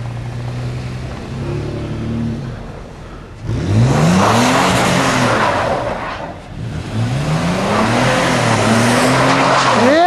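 Car engine running at low revs, then revving hard twice, each time rising in pitch for a couple of seconds, as the car spins donuts in snow. A loud rushing noise goes with each rev.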